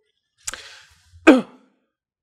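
A man's voice: a breath drawn about half a second in, then a short sigh-like vocal sound, falling in pitch, a little after one second.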